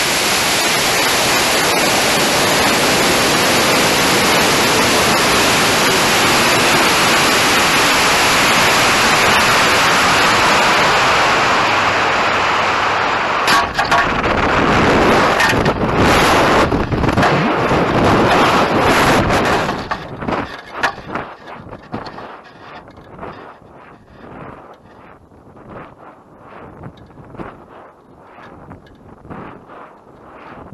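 High-power rocket's onboard camera: a loud, steady rush of air as the rocket climbs and coasts, fading slightly. Around apogee, midway through, a run of sharp knocks and clatter comes as the drogue parachute deploys. After that the sound drops to a much quieter gusting wind buffet as the rocket descends under the drogue.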